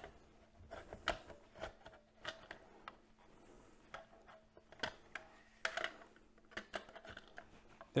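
Light, irregular clicks, taps and scrapes of a plastic security camera being fitted and twisted onto its mounting bracket by hand.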